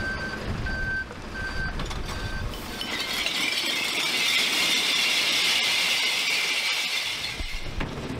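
A truck's reversing alarm beeps about four times, roughly one beep every three-quarters of a second. About three seconds in, a loud, dense rush and clatter of glass bottles starts as they pour out of the recycling truck's compartments onto concrete. It stops shortly before the end.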